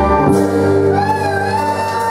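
A live band with electric guitars and drums holds a sustained closing chord of a Malay pop song, while a female singer holds a long note with vibrato from about a second in.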